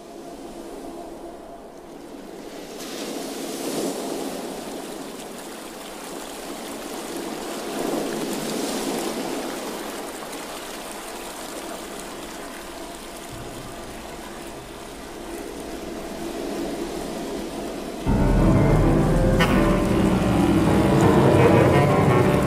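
Contemporary chamber ensemble with bowed strings playing: soft, sustained, hazy textures that swell and fade, then a sudden louder, fuller entry with deep low notes near the end.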